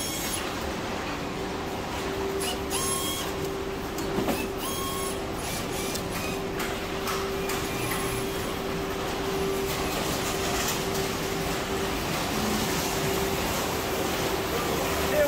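Workshop floor noise where televisions are taken apart by hand at benches: a steady machine hum with scattered clicks and knocks from the work.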